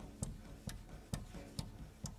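Drum kit played with sticks in a sparse, steady pulse of light ticks, about two strikes a second, each with a dull low knock underneath, as part of a free improvisation.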